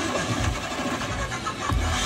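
Slot machine bonus-round music and sound effects playing during the final spin of a hold-and-spin bonus, with a pulsing low bass.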